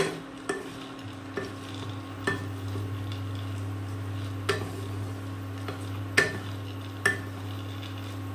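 Wooden spatula stirring a heap of mixed dry fruits, nuts and seeds being roasted in a ceramic-coated pan, with irregular scrapes and knocks of the spatula against the pan. A steady low hum sets in about a second in.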